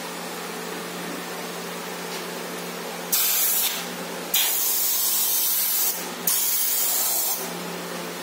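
Airbrush spraying paint in three hissing bursts of about half a second to a second and a half, starting about three, four and a half and six seconds in, over a steady low hum.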